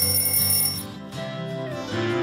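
A short, high electronic timer chime rings for about a second at the start, marking the end of a five-second countdown, over acoustic guitar background music.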